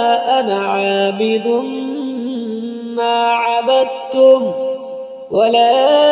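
A solo voice reciting the Quran in a melodic chant, holding long ornamented vowels that step up and down in pitch, with a brief pause about five seconds in before the chant resumes.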